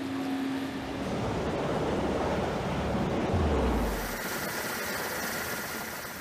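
Steady rumbling mechanical noise, with a deep tone sliding down in pitch a little past halfway through.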